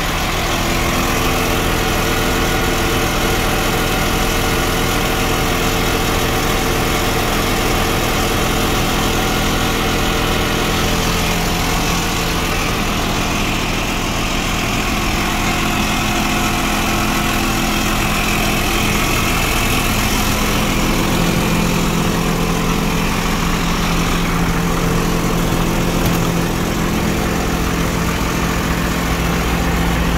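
A jet fuel truck's engine idling steadily, a constant low running note with no revving.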